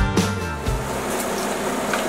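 Background music with a beat that stops within the first second, then diced bacon sizzling steadily in a hot skillet.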